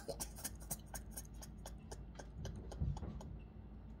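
Faint, quick, irregular clicking, several ticks a second, over a low steady room hum, with a soft low thump about three seconds in.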